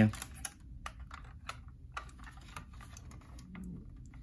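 Light, irregular clicks and taps from hands handling a 1:24 scale model Range Rover: its small opening doors and plastic parts clicking as it is moved and turned over.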